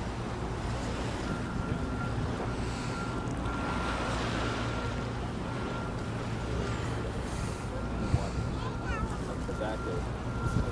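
Wind on the microphone over a low steady rumble, with the faint chatter of onlookers' voices.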